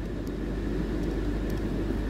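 Steady low background hum with a couple of faint clicks from the keys of a Casio fx-3650P calculator being pressed.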